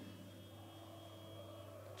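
Quiet room tone with a steady low hum and a faint thin high whine.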